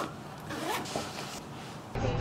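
A fabric backpack's zipper being pulled, in a few short strokes.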